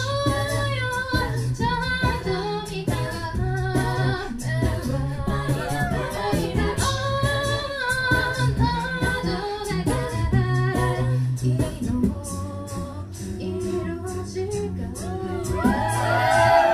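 Live a cappella group singing through microphones: female lead and harmony voices over a sung bass line, with beatboxed percussion keeping a steady beat.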